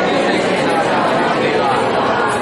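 Only speech: continuous talking with several voices overlapping.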